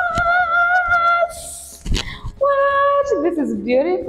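A woman singing long held notes with a slight wobble, broken by a breathy hiss and a single sharp smack about two seconds in, then a shorter held note and a wavering, sliding note near the end.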